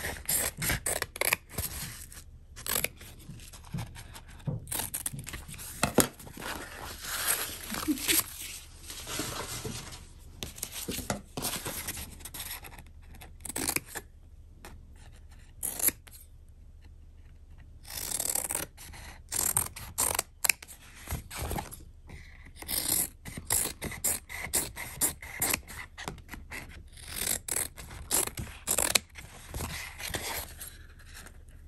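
Fabric scissors cutting through fused fabric and interfacing: a run of irregular crisp snips and slicing strokes, with a lull of a few seconds about halfway through.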